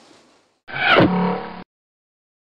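Short edited-in logo sound effect: a falling swoosh with a sharp hit about a second in, then a low held tone that cuts off abruptly.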